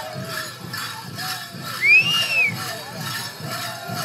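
Gaan Crown Dance music: a men's chorus chanting over a steady drum beat, with the jingling of the dancers' metal ornaments. About two seconds in, one high-pitched call rises and falls over the singing, briefly the loudest sound.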